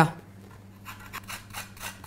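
Asian pear being grated on a metal box grater: a quick run of short, even rasping strokes that begins about a second in.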